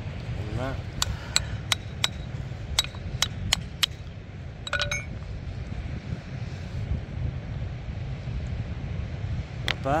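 Rock hammer tapping a small stone nodule on a rock ledge to split it open: about eight sharp, separate taps over about three seconds, then a short ringing clink a second later. A steady low rumble runs underneath.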